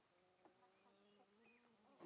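Very faint buzz of a flying insect, a steady hum that drifts slightly in pitch, over near silence.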